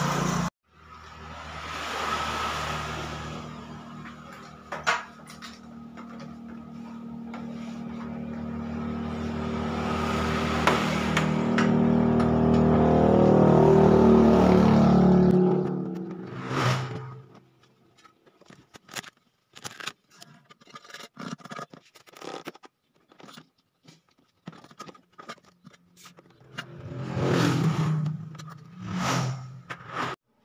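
Petrol being sucked out of a scooter's fuel tank through a hose into a plastic jerrycan: a steady running sound that grows louder and stops suddenly about fifteen seconds in. Scattered clicks and knocks of handling the hose and can follow.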